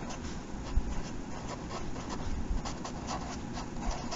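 Felt-tip marker writing on paper: a run of short, faint scratching strokes as a word is written out.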